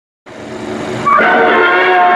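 Opening of the soundtrack: a noisy swell rises from silence, then about a second in a loud sustained chord of many steady tones starts, the beginning of the orchestral opening music.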